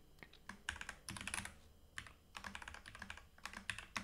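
Typing on a computer keyboard: runs of quick keystrokes in short bursts with brief pauses between them.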